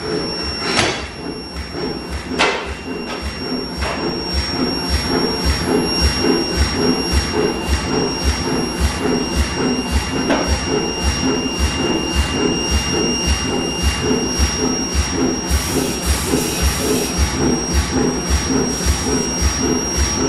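Medium-frequency induction heater giving a steady high-pitched whine with a fainter overtone above it, over a forging hammer that strikes a few separate blows and then settles into a steady beat of about two blows a second.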